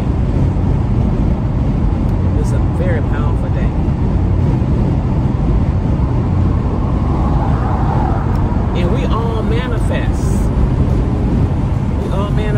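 Steady road and engine noise inside a moving car's cabin, a low rumble at highway speed. Brief voice sounds come about three seconds in and again around nine to ten seconds.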